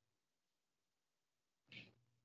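Near silence: room tone, with one brief faint hiss-like noise near the end.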